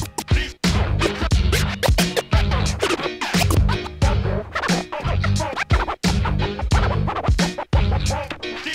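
Vinyl scratching on a Technics SL-1200MK2 turntable: the record is pushed back and forth in quick rising and falling strokes, chopped on and off by the mixer's fader. It plays over a looping boom-bap hip hop beat with a heavy repeating bass line.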